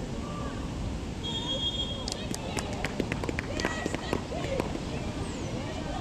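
Distant footballers shouting across the pitch, over wind on the microphone. A little over a second in, a referee's whistle blows briefly, followed by a couple of seconds of scattered sharp knocks.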